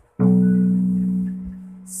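Four-string electric bass guitar: a single B note at the second fret of the A string, plucked once about a fifth of a second in and left to ring, slowly fading.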